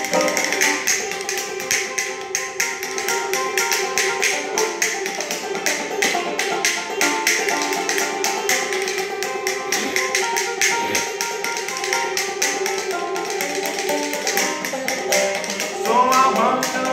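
Banjo playing a repeating plucked figure, accompanied by a fast, steady rhythm of hand claps and body slaps as percussion.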